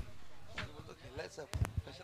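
Faint distant voices, then two quick thumps on the commentator's microphone about a second and a half in, as it is tapped during a mic check.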